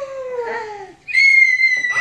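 Young girls' excited vocal reactions: a drawn-out falling 'oh' of surprise, then, about a second in, a long high-pitched squeal of delight held on one note.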